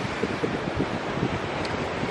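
Wind buffeting the microphone in uneven low rumbles, over a steady rush of small waves washing on a rocky shore.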